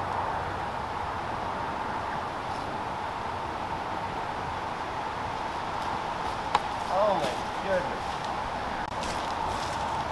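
Steady outdoor background with a faint even hum, broken by one sharp click about six and a half seconds in, followed straight after by a short wordless vocal exclamation from a person.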